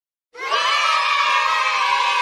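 A group of children cheering and shouting together, starting about a third of a second in and holding steady.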